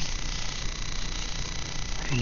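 Steady background hiss with a low rumble underneath: room noise, with no distinct sound standing out.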